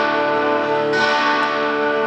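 Electric guitar chords ringing out with a bell-like sustain, a new chord struck about a second in.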